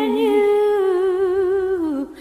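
A singer holds one long sung note with a slight vibrato, then slides down in pitch near the end, with only faint accompaniment beneath it.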